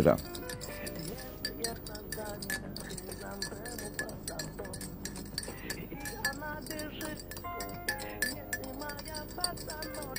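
Low background of glasses and dishes clinking now and then, with faint voices and music underneath.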